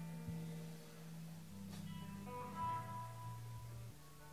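Guitar played softly on stage between songs: a few single notes held and left to ring, one after another at different pitches.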